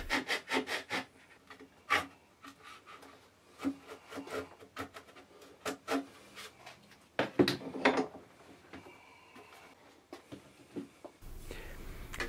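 Small guitar maker's fret saw cutting a slot into the lacquered side of a guitar, with short rasping strokes from the tip of the saw. A quick run of strokes comes first, then slower, irregular single strokes.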